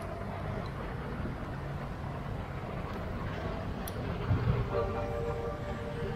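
Steady rumble and road noise of a moving vehicle, with no clear tones.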